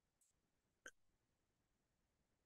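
Near silence, broken once by a single faint, brief click a little under a second in.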